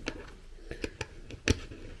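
Small sharp clicks and ticks of a precision screwdriver and a tiny screw against the metal parts of an M.2 SSD enclosure, about half a dozen irregular taps with the loudest about one and a half seconds in.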